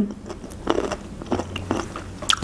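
Close-miked chewing with the mouth closed: a few soft, separate mouth clicks and smacks.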